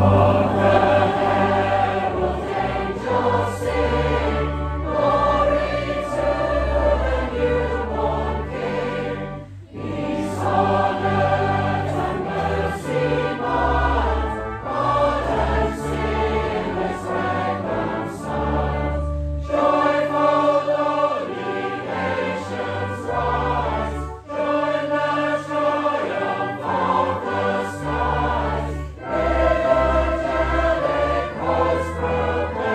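A church congregation singing a carol together over sustained organ bass notes. The singing goes in long phrases, with short breaks between lines.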